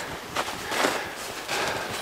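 Irregular soft crunching and rustling of people moving about in snow.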